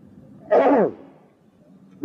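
A man's short, breathy vocal cry about half a second in, falling steeply in pitch, like an exclamation or sigh voiced by a storyteller.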